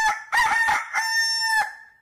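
Rooster crowing once: a cock-a-doodle-doo of a few short notes ending in a long held note that fades out.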